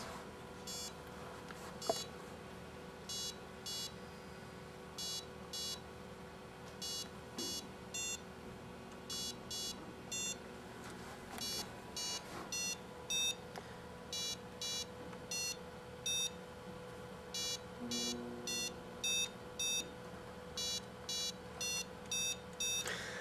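Short electronic beeps from a LEGO Mindstorms programmable brick's speaker, coming in groups of two to four as a Simon Says robot plays its pattern and answers presses on its touch sensors; the groups grow longer as the game goes on.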